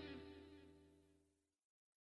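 The closing notes of an electric guitar cover fading out, dying away to near silence within about a second and then cutting off completely.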